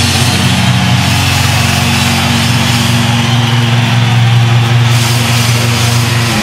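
Heavy metal band playing live in an instrumental passage: distorted electric guitar and bass hold a low, steady, rapidly pulsing riff over drums and cymbal wash.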